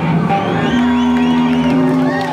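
Electric rock band's amplified guitars ringing out on long held notes as a song ends live, with audience whoops and cheers rising over it.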